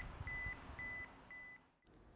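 Camera self-timer beeping its countdown: short, high, even beeps about two a second, which stop shortly before the end.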